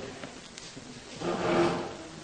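A brief scrape about a second in, lasting just over half a second.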